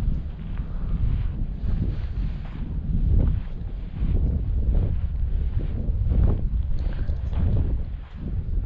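Wind buffeting the microphone of a moving action camera, a heavy low rumble throughout, with footsteps on sand about twice a second.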